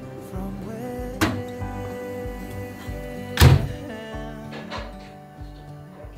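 Background music over two knocks of an oven being loaded and shut: a sharp one just after a second in and a louder thunk about three and a half seconds in, as the oven door closes.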